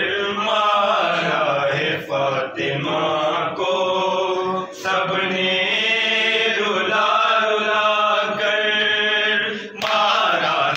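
Men's voices chanting a noha, a Shia mourning lament, in long, drawn-out held notes with short breaks between phrases.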